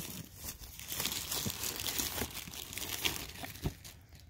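Hands rubbing and sliding on a cardboard mailer box as it is turned around, a scraping rustle with a few light knocks against the cardboard.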